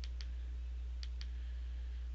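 Button presses on a controller or keyboard stepping through an on-screen menu: two quick double clicks, one at the start and one about a second later. A steady low electrical hum sits underneath.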